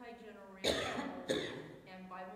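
A person coughing twice, about two-thirds of a second apart, in the midst of a woman's speech.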